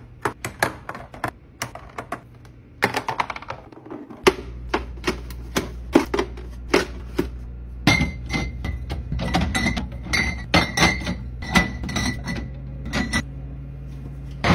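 Quick light clicks and taps of eggs being set into a clear plastic egg holder, then glass Topo Chico bottles clinking and ringing as they are set down against each other on a glass refrigerator shelf. A steady low hum starts about four seconds in.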